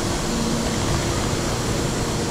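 Steady din of a railway station platform: the hum of a standing electric commuter train alongside, with wheeled suitcases rolling over the platform paving.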